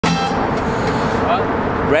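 Loud, steady urban traffic noise from vehicles under a bridge, with a short car-horn toot at the very start.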